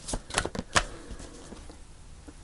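A deck of tarot cards handled and shuffled by hand. A few crisp card flicks come in the first second, then quieter rustling as the cards are worked.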